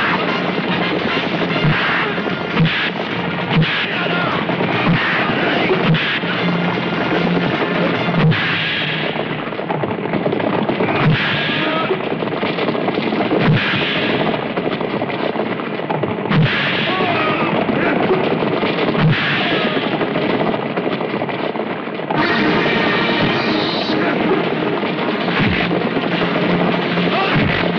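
Film action-scene soundtrack: loud background music mixed with the sound of galloping horses and scattered sharp bangs.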